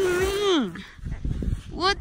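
A person's voice calling out in one long drawn-out note that falls away after about half a second, then low thumps and scuffs, and another long wavering call begins near the end.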